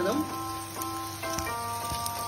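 Background music with steady held notes, over a faint crackling sizzle of oil in a frying pan.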